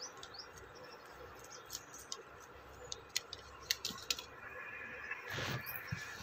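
Faint steady hiss of dal simmering in a pan, with scattered small sharp pops. A brief louder sound comes about five seconds in.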